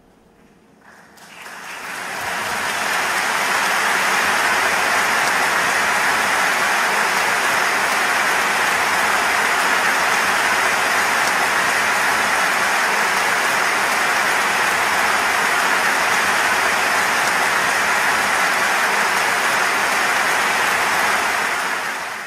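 Steady rushing water sound, an even hiss with no rhythm or pitch. It fades in over the first couple of seconds and stops abruptly at the very end.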